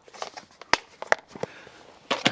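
Hands handling gear in a car's centre cubby: a few sharp clicks and knocks, the loudest a little under a second in.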